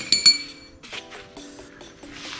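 A small metal wheel spacer clinking as it is set down beside the axle rod, two quick metallic clinks at the very start that ring briefly. Background music plays underneath.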